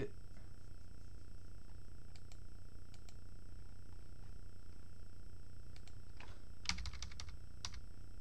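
Computer keyboard typing while editing code. There are a few isolated keystrokes early on, then a quick run of rapid keystrokes near the end, over a steady low electrical hum.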